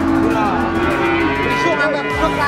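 Cattle mooing: one long, steady moo that ends just over a second in.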